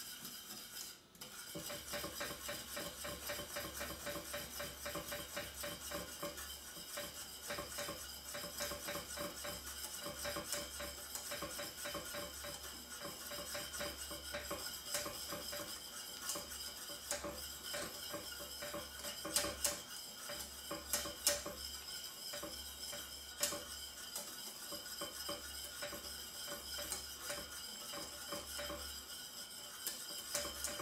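Wire whisk beating caramel sauce in a stainless steel saucepan, butter being whisked in: a rapid, continuous scraping and clicking of the metal tines against the pan. There are two louder clinks about two-thirds of the way through.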